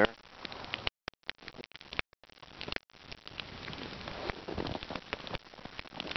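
Wood campfire crackling, a dense run of sharp pops and snaps over a low hiss. The sound cuts out briefly about one and two seconds in.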